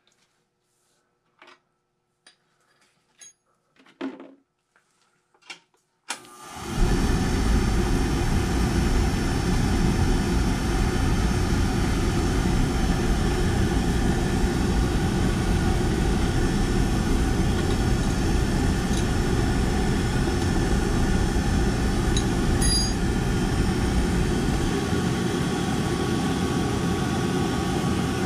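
Oil burner on an old boiler starting up suddenly about six seconds in, after a few faint clicks, then running steadily: the motor, blower fan and fuel pump make a loud, even hum. The pump's bleed port is open, so the burner is running while the fuel pump is being bled to check the oil flow.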